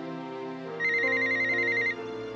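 A mobile phone rings with a rapid, warbling electronic trill lasting about a second, starting a little under halfway in, over soft background music.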